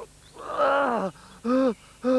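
A character's voice straining with effort: one long groan that falls in pitch, then two short grunts, as he struggles to climb onto a bicycle too big for him.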